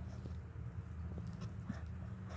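Faint low steady hum with a few soft scattered ticks and rustles of a hand digging through loose, dry potting soil.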